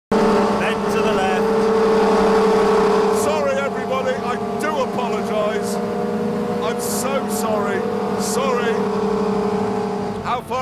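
A hovercraft's engine and fan running at a steady pitch, a constant loud drone, while it skims across a river throwing up spray. Voices are heard over it from about three seconds in.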